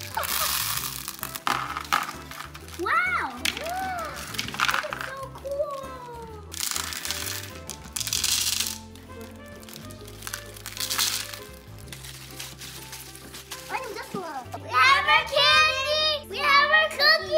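Plastic candy packets crinkling in bursts as sweets are tipped out into a bowl, over background music. Near the end a child's voice comes in loudly, rising and falling in a sing-song way.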